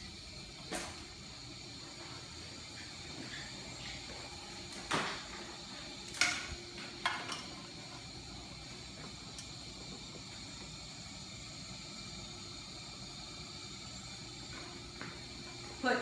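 Steady hum of operating-room equipment, with a few sharp clicks and knocks in the first half as a cable connector is handled and plugged into the back of a monitor.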